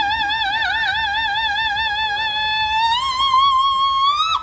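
A woman's soprano voice holding one long, high operatic note with vibrato. About three seconds in the pitch steps up to a higher note, held with less vibrato.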